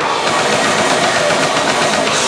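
Heavy metal band playing live and loud: distorted guitars and drums in a dense, unbroken wall of sound.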